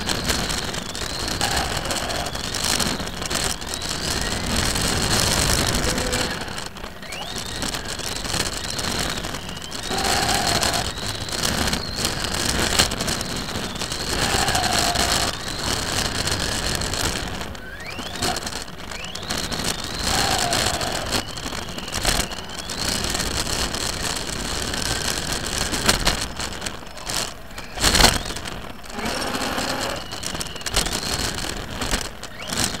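Onboard sound of a racing RC car, heard from a camera mounted on it: motor and drivetrain whine rising in pitch each time it accelerates, over a steady rattle and hiss of tyres and chassis on the floor. Sharp knocks come throughout, the loudest about two seconds before the end.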